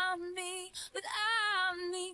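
Quiet background song: a woman's voice singing two long held notes.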